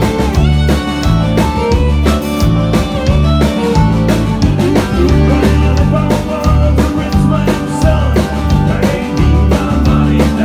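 Live band playing an instrumental stretch: a drum kit keeping a steady beat under a walking bass line, with guitar on top.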